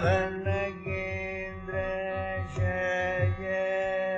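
Carnatic classical music in raga Simhendramadhyamam: a melodic line of held notes that step and slide between pitches over a steady drone, with mridangam strokes keeping an even beat beneath.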